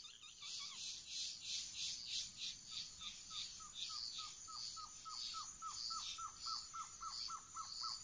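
Forest ambience: an insect chorus pulsing at about two to three beats a second, and a bird repeating a fast series of short down-slurred notes, about four a second, that grows louder from about a third of the way in.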